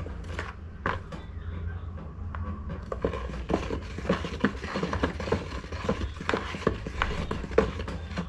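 Wooden stick stirring thick liquid detergent in a plastic basin: irregular clicks and knocks of the stick against the basin wall as the liquid is swirled, coming thicker from about three seconds in, over a low steady hum.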